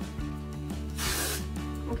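An aerosol can of Amika dry shampoo spraying one short hiss of about half a second, midway through, over background music.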